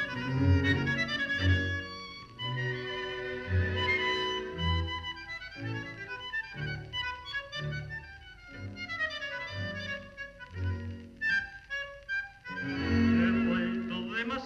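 Recorded tango orchestra music with a bandoneon playing a fast variación: rapid runs of short notes over a regular, marked bass pulse. A louder passage with held notes comes in near the end.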